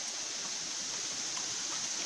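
Steady rush of flowing river water.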